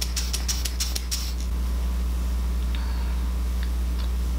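Hair-thickening fiber spray ('strand maximizer') puffing in quick short bursts, about five a second, stopping a little over a second in. A steady low hum runs underneath.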